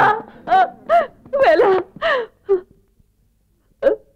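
A high-pitched voice wailing and crying out 'Vela!' in a series of short, anguished cries. A pause follows, then one brief cry near the end.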